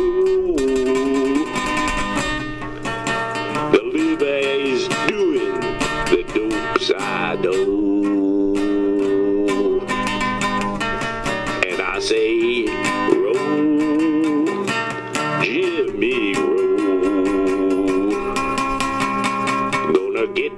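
Acoustic guitar strumming steady chords under a lead melody line that bends and wavers in pitch, an instrumental break without singing.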